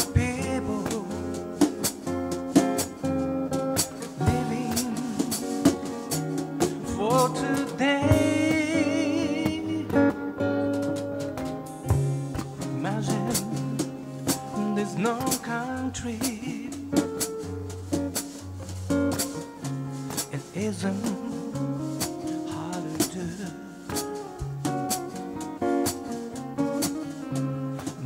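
Live acoustic band: two acoustic guitars strummed and picked, with a drum kit keeping a steady beat and a wavering sung melody line.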